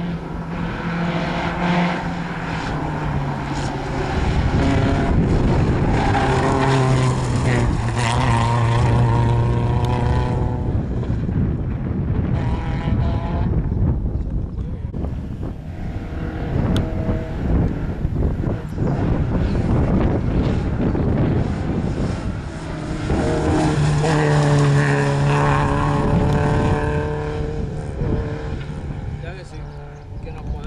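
Rally cars' engines revving hard on a tarmac special stage as they accelerate out of a hairpin, the note stepping up and down through gear changes. The engines are loudest a few seconds in and again near the end.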